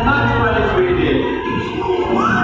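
A voice over an arena's public-address speakers, with music underneath and the large hall's echo.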